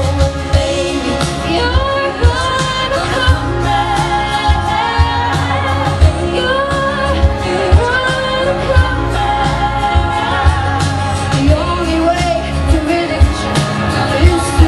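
Live pop band playing with a woman singing lead into a microphone, over drums keeping a steady beat, bass and guitar.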